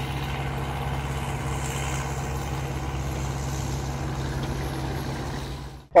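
Engine of a mine-clearing machine running steadily with a constant low hum as it works a field being cleared of mines. The sound fades out sharply just before the end.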